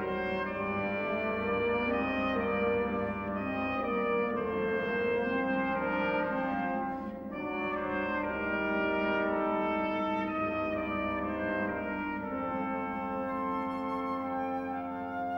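Orchestral film score led by brass, playing slow, held chords that change every second or two, with a brief dip about halfway through.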